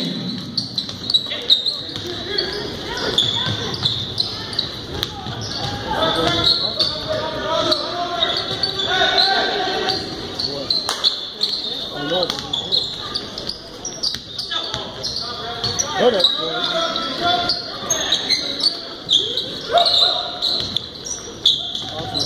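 A basketball being dribbled and bouncing on a hardwood gym floor during play, the impacts coming irregularly. Spectators' voices and shouts echo through the large gym.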